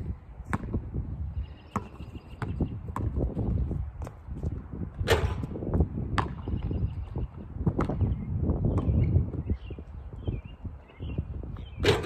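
A basketball bouncing on an asphalt court, with quick sharp bounces and sneaker steps, and one louder hit about five seconds in. Beneath it runs a low, gusty rumble of wind on the microphone.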